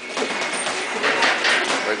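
Boxing gym noise during sparring: a few dull knocks of gloves landing, over a background of voices.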